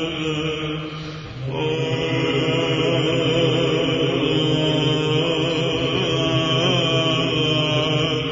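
Byzantine chant in the chromatic plagal fourth mode: a solo cantor's voice sings a slow, ornamented melody over a steady held low drone (ison). About a second in there is a short break, and then the chanting resumes on a lower held note, a little louder.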